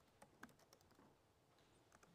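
Faint laptop keyboard typing: a handful of soft, separate keystroke clicks, mostly in the first second, with near silence between them.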